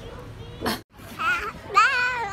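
Low background, a sudden brief drop to silence a little before the middle, then a toddler's high-pitched babbling with wide rises and falls in pitch.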